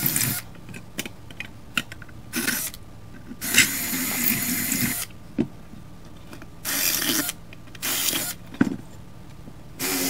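Cordless drill running in short bursts as it enlarges bolt holes in a metal bracket, about five runs with the longest lasting around a second and a half, and a few sharp clicks between runs.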